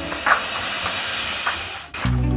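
A steady, even hiss that starts abruptly and cuts off just before the end.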